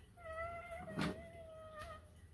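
A young girl crying: one long, high, whining wail held for most of two seconds, sagging slightly in pitch, with a soft knock about a second in.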